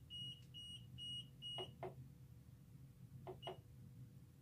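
Digital controller of a mug heat press beeping in a steady series, about two and a half high beeps a second, stopping about two seconds in. It is followed by a couple of soft clicks and a single beep near the end.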